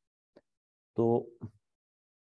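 A man speaking a short phrase in Hindi, with a faint short click a little before it.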